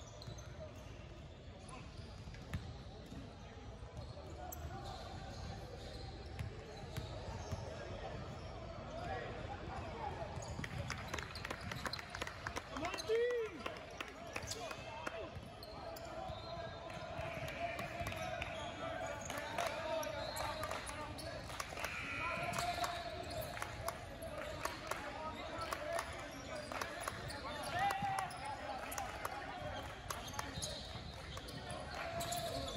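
A basketball being dribbled on a hardwood court amid the steady murmur of voices, echoing in a large gym. A short rising-and-falling tone comes about halfway through.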